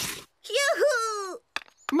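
A cartoon child's voice giving one drawn-out wordless 'ooh', lasting about a second, its pitch rising and then falling away.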